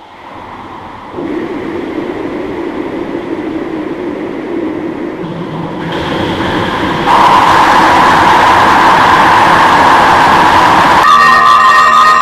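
A dense rushing noise, like a passing train, that grows louder in steps and is loudest in the second half. About eleven seconds in it gives way to steady musical tones.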